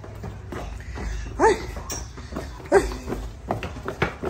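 Footsteps going down concrete stairs, with handheld rumble, and two short high calls about a second and a half and three seconds in that stand out above them.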